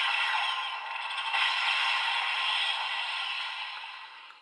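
Electronic sound effect from a DX Kamen Rider toy's built-in speaker: a steady hissing noise that fades out near the end.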